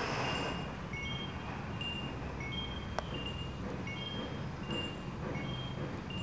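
Faint, short high chiming notes at a few different pitches, recurring every half second or so over a low steady hiss, with a single click about three seconds in.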